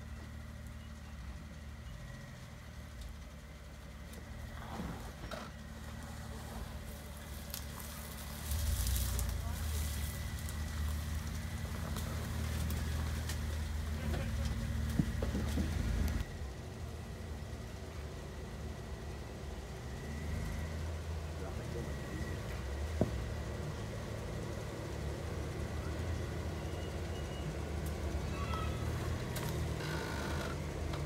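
Jeep Wrangler engine running at crawling speed over rock ledges, a low rumble. It grows louder for several seconds in the middle and then drops away suddenly.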